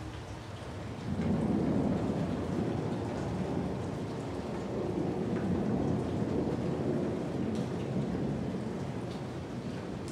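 Steady rain with a long rolling rumble of thunder that swells up about a second in and eases off toward the end.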